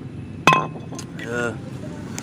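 A single sharp clink of a glass bottle knocking against a stone step, about half a second in, ringing briefly at two clear pitches. A short burst of voice follows.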